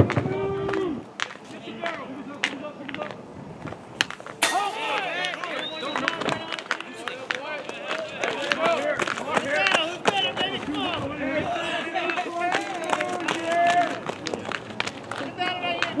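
Several voices of players and spectators shouting and calling out at a baseball game, overlapping throughout. A single sharp crack of a baseball hitting a bat or glove comes about four and a half seconds in.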